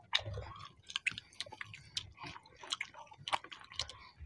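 Close-up eating sounds of two people chewing paratha and chicken curry: an irregular run of short clicks and smacks from chewing mouths, several a second.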